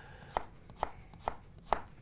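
Chef's knife slicing carrots into thin rounds on a plastic cutting board, each cut ending in a sharp knock on the board, about two cuts a second.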